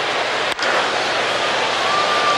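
Ballpark crowd noise with one sharp crack of a bat hitting a pitched baseball about half a second in, putting the ball in play as a fly ball.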